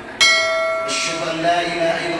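A single bright bell chime, struck about a fifth of a second in; its high overtones stop short after under a second and the lowest tone rings on a little longer. It is a notification-bell sound effect from the subscribe-button animation.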